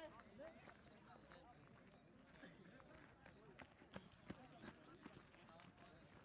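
Faint voices from a group of people, with a few soft, scattered knocks in the middle.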